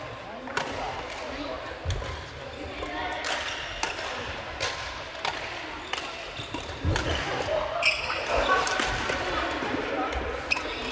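Badminton rackets striking shuttlecocks on several courts at once, sharp pops at irregular intervals in a large gymnasium, over a background of players' voices.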